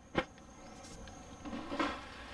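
A single sharp click just after the start, over a low background hiss with a faint, steady high-pitched whine that stops about three-quarters of the way through.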